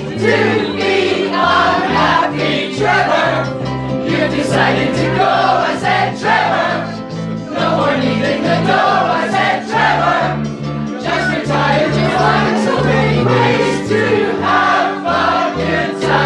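Live ukulele band playing an upbeat song: ukuleles strumming over a stepping bass line, with several voices singing together.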